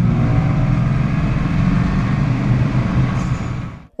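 Subaru car being driven on the road: steady engine and tyre noise, fading out just before the end.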